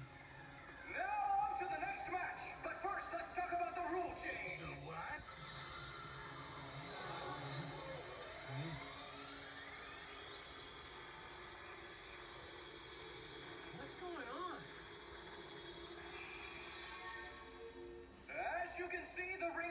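Soundtrack of an animated TV episode playing: background music and sound effects, with voice-like calls in the first few seconds and a long rising glide around the middle.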